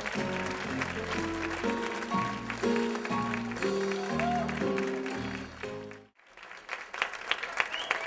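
A live theatre band led by piano plays the closing chords of a show tune, with audience applause over it. The music cuts off suddenly about six seconds in, and applause alone rises again.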